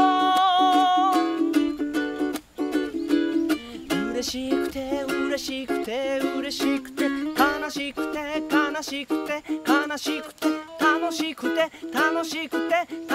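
A man singing while strumming a ukulele, opening on one long held note before the sung line moves on over a steady strum.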